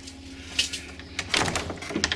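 Metal lever handle of a locked wooden door pressed and the door pushed against its lock. It gives a small click, then a cluster of clunks and rattles about one and a half seconds in, and the door stays shut.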